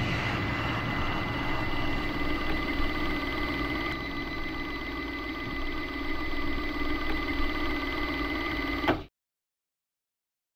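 A steady droning hum with a high held whine over it, which cuts off suddenly about nine seconds in.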